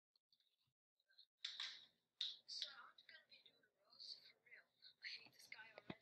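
Faint, tinny speech played back through an iPod's small speaker and picked up by a computer microphone; the first second or so is near silence before the voice comes in.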